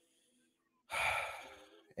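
A man sighs: one breathy exhale about a second in that fades away over a second.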